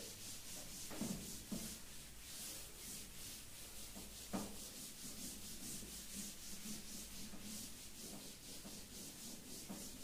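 Cloth wiping a chalkboard: faint, rhythmic swishing strokes, about two a second, with a few soft knocks against the board, the loudest about four seconds in.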